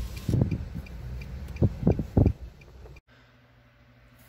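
Low rumble inside a car cabin with a few short, dull knocks, then an abrupt cut about three seconds in to the quiet hum of a room.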